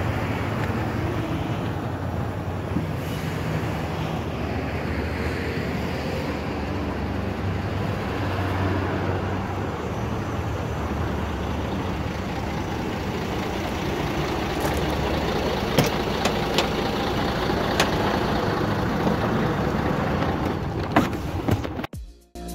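Livestock truck's engine running with a steady low hum. A few sharp knocks come in the second half.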